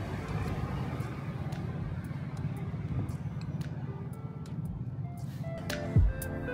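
City street ambience: a steady low rumble of traffic with faint ticks. Background music with separate pitched notes comes in near the end.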